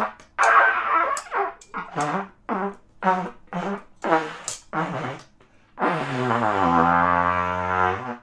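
Trumpet blown unskilfully: a string of short blasts, about two a second, then one long held note about two seconds long that dips in pitch as it begins.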